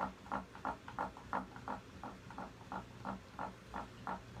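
Paintbrush being rinsed in water, swished against the container in short, even strokes about three a second.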